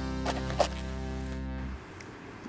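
TV-show bumper jingle ending on a held musical chord that stops shortly before the end.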